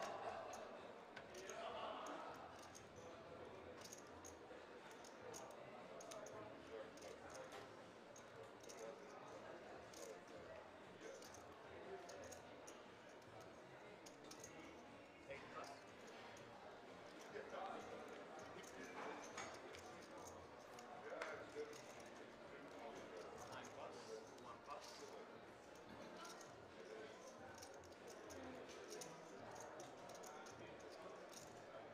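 Faint poker-room sound: low background voices with scattered small clicks of poker chips being handled and stacked at the table.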